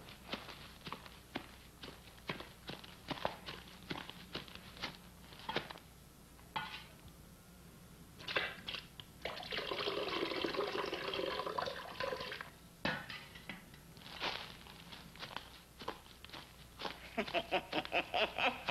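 Water pouring from a bucket at a well for about two and a half seconds, preceded by a string of light, irregular clicks and knocks. A quick run of short pulses starts near the end.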